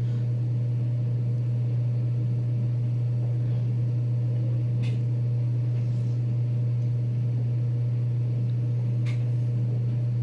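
A steady, loud low hum, unchanging throughout, with a couple of faint light clicks about five and nine seconds in.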